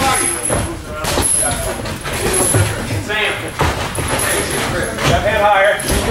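Indistinct voices in a boxing gym, with a few short sharp smacks of boxing gloves landing during sparring.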